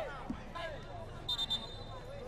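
Faint background voices of players and spectators around the pitch, with one short, high whistle blast about a second and a half in.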